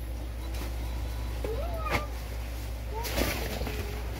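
A length of cloth rustles as it is shaken open near the end, with a few short rising-and-falling vocal calls before it.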